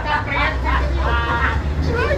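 Low, steady rumble of a city bus's engine heard from inside the passenger cabin, under people's voices.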